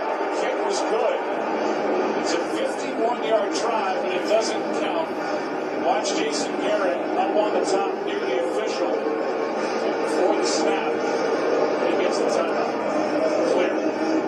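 An NFL game broadcast playing on a television: commentators' voices over steady crowd noise.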